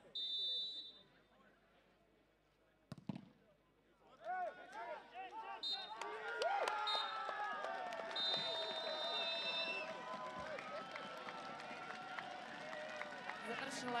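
Referee's whistle blowing a short blast, then a single thump about three seconds in. From about four seconds on, players and spectators shout over one another, with short whistle blasts and then a long one from about eight to ten seconds: the final whistle.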